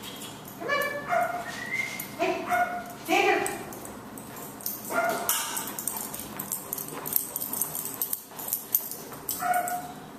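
A dog whining and yipping in a string of short, high calls, most of them in the first few seconds and one more near the end.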